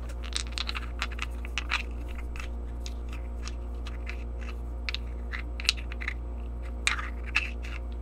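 River rocks knocked and rubbed together by hand, giving a string of irregular sharp clicks and small scrapes over a steady low hum.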